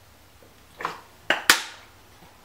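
Drinking from a plastic water bottle and putting it down: a soft short sound a little under a second in, then two sharp knocks close together, the second the loudest.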